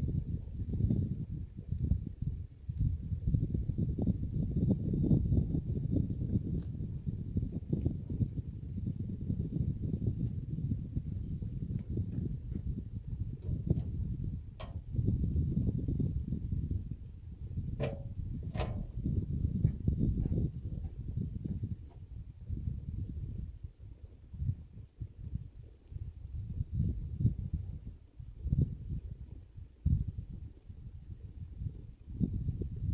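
Wind buffeting the phone's microphone: an irregular low rumble that rises and falls throughout, with a few brief sharp clicks around the middle.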